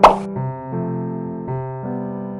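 Soft electric-piano background music with steady chords, opened by a short, loud pop sound effect right at the start.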